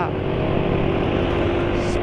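Yamaha scooter's engine running at a steady speed while riding, with road and wind noise.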